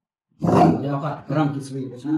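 A man's voice speaking loudly, starting about half a second in.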